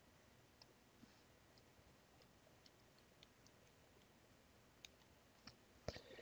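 Near silence: faint room tone with a few small clicks, mostly in the second half, from a stylus tapping a pen tablet during handwriting.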